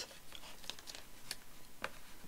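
Faint paper handling: light rustling and a few soft clicks as paper pieces are shifted and pressed down by hand onto a card binder cover.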